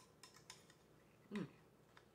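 Metal spatula cutting into a casserole in a glass baking dish: three light clicks of metal against glass in the first half-second, then quiet.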